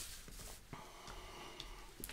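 Faint clicks and taps of tarot cards being set down on a wooden table and the deck being handled: a few soft, sharp ticks.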